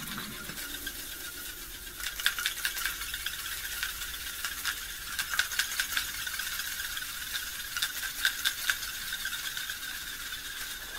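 Noise music built from processed recordings of found instruments: a steady hiss with clusters of dry rattling clicks over it, thickest about two, five and eight seconds in.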